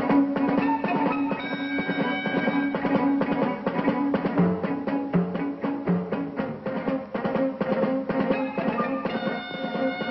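Film score music: fast, dense percussion over a held low note, with higher sustained notes above and a few short lower notes about halfway through.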